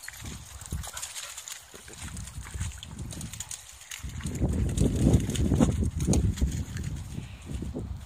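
Footsteps and rustling of someone walking over wet grass and heather, becoming heavier and louder from about four seconds in.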